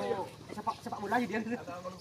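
People talking, with no clear words.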